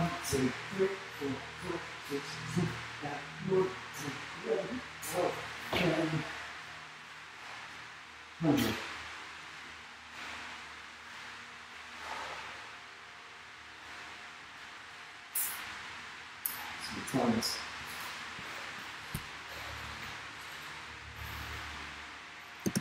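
A man breathing hard after hundreds of burpees: quick pitched panting for the first several seconds, then slower, deeper breaths a few seconds apart as he recovers. A short click comes about two-thirds of the way through.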